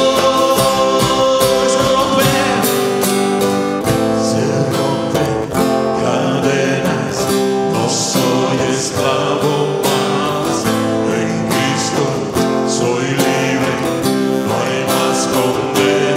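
A live worship band playing an instrumental passage, led by a strummed acoustic guitar with a steady rhythm of band accompaniment.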